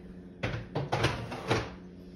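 Dishes and kitchen cupboards being handled off camera: a quick run of four or so clattering knocks about half a second to one and a half seconds in.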